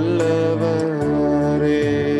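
A boy singing long held notes over electronic keyboard chords, the chord changing about a second in.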